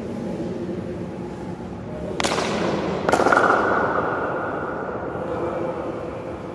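A futsal ball kicked hard, then striking the metal goal frame about a second later with a loud clang that rings for a couple of seconds in the echoing gym.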